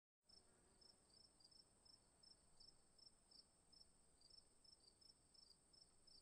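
Near silence, with a faint steady high tone and faint short high chirps repeating about three times a second.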